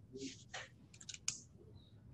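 A cluster of four or so faint, quick clicks about a second in, over low room noise, after a couple of soft hissing sounds.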